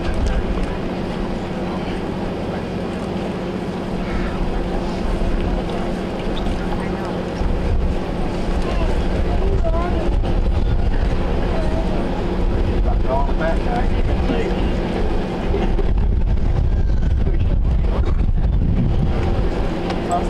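Wind rumbling on the microphone over a steady low hum, with faint scattered voices from a gathered crowd.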